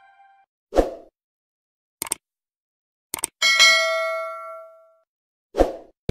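Intro sound effects: the tail of a music sting fades out, then a short hit about a second in, two clicks, a few more clicks and a bright bell ding that rings out for about a second and a half, and another short hit near the end.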